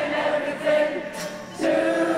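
A large crowd singing a song together in chorus, holding long notes with short breaks between phrases, with acoustic guitar accompaniment.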